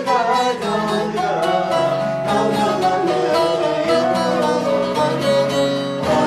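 Bağlama and grand piano playing a Turkish folk tune (türkü) together. Plucked saz notes sound over sustained piano notes and chords.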